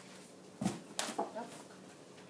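Feet stamping on and squeezing an inflated latex balloon on carpet: a dull thump about a third of the way in, then a sharper knock and short rubbery squeaks, with the balloon not bursting.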